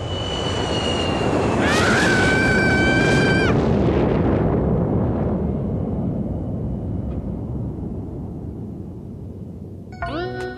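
A vehicle rushing past, in a cartoon sound effect: a loud rush that swells over the first three seconds and then slowly dies away, with a high held tone near its loudest point.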